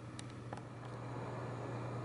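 Computer case fans running: a quiet, steady low hum with an even hiss, and two faint clicks in the first second.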